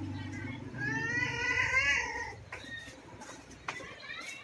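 Domestic cat meowing once, a single long, wavering call of about a second and a half, starting about a second in.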